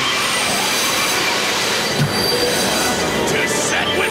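Cartoon magic sound effect of a sword's energy beam zapping a serpent man: a steady screeching hiss with high ringing tones, over background music.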